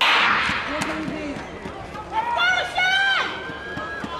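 Starting pistol fired for a 400 m race, a sharp loud bang at the very start with a noisy tail, followed by spectators cheering and high voices shouting about two seconds in.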